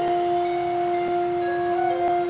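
Concert band holding a sustained chord, two steady notes an octave apart carrying it, with faint light taps about a second in and again at the end.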